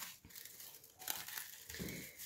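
Plastic cling film crinkling faintly as it is folded and tucked by hand over a filled dish.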